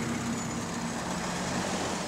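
A New Routemaster double-decker bus pulling away from the stop: a steady hum of its drive and road noise, with a low tone that fades out about half a second in.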